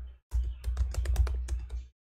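Typing on a computer keyboard: a quick run of keystrokes lasting about a second and a half, after a brief pause near the start.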